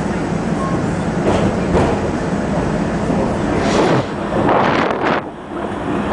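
R-68 subway train running at speed through a tunnel, heard from inside the front car: a steady rumble of wheels on rail with a low motor hum. In the last two seconds, surges of rushing noise come and go.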